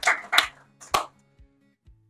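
The last few hand claps, sparse and fading, the final one about a second in, over a low held musical tone that cuts off just before the end.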